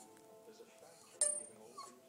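A terrier whining at a mouse, giving a short high whine near the end. About a second in comes a sharp, ringing clink, the loudest sound.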